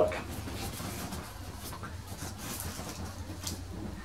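A cardboard box being opened by hand, its flaps rubbing and scraping, with a few brief crackles and faint rustling.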